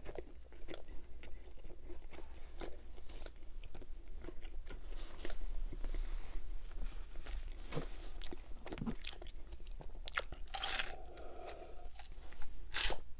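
Close-miked biting and chewing of a soft-bun hot dog: wet mouth smacks and small clicks, over and over. Near the end, a sip swallowed from a glass of soda.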